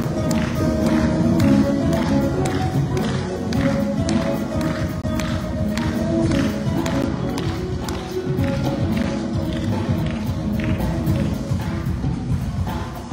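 Live instrumental music: a saxophone playing held notes over quickly plucked oud strokes, with a band behind.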